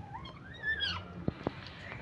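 Baby otter gives one squeaky call that rises and then falls in pitch while it eats a fish, followed by two sharp clicks a little past the middle.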